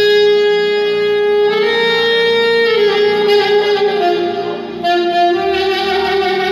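Saxophone playing a slow, free-flowing doina melody in long held notes that step downward through the middle, over a low sustained accompaniment.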